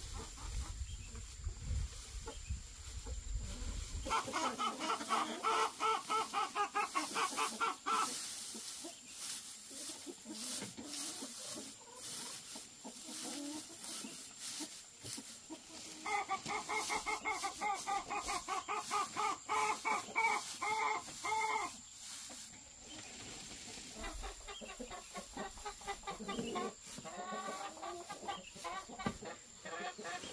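Chickens clucking in long runs of rapid clucks, in three bouts of a few seconds each, the loudest a little after the start and in the middle.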